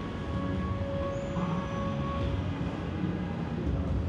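Shopping-mall ambience: a steady low rumble with faint background music holding long notes in the first half.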